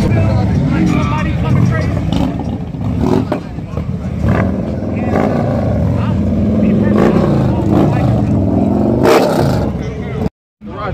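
A procession of Harley-Davidson touring motorcycles with V-twin engines running as they ride slowly past one after another. Near the end the engines swell as a bike passes close, followed by a short loud burst.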